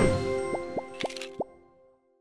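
End of a news channel's outro jingle: a held synth chord rings down while four quick rising blips sound, the last one loudest. The jingle fades out about one and a half seconds in.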